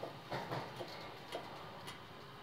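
Quiet train cabin between announcements: a faint background with a few light, irregular clicks.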